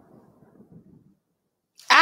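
A rumbling noise fading away over about the first second, followed by silence. A woman starts to speak near the end.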